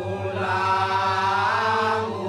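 Balinese genjek vocal ensemble: a group of men chanting together over a fast, even low pulse. A lead voice comes in loudly about half a second in and rises in pitch near the end.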